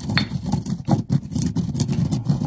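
Granite pestle grinding whole black peppercorns and salt in a black granite Cole & Mason mortar: a continuous gritty rumble of stone on stone, made of rapid, uneven strokes, with the hard corns crunching. This is the salt-and-pepper grind used to season the new mortar.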